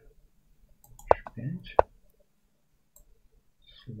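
Two sharp clicks, about a second in and again under a second later: the online chess board's move sounds as a piece is played on each side.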